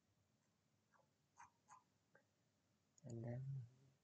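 A few faint computer mouse clicks, about four spread over the first half, in an otherwise near-silent room; then a man's voice briefly, about three seconds in.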